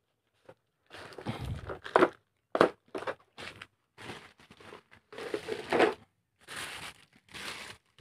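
Plastic courier-bag packaging crinkling and rustling as it is handled, in irregular bursts with short gaps and a few sharper cracks.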